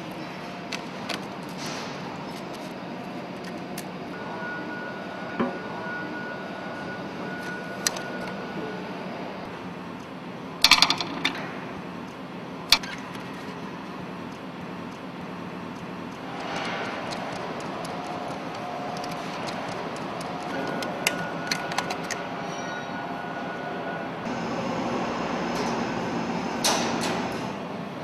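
Sheet-metal exhaust cladding and its toggle latch clips being handled: scattered metallic clicks and clanks, with a cluster of louder knocks about eleven seconds in, over a steady workshop hum.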